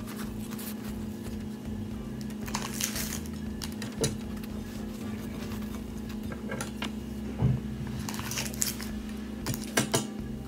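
Scattered light clinks and taps of a knife on a plate as butter is spread on dinner rolls, a few sharper knocks about four seconds in, past the middle and just before the end, over a steady low hum.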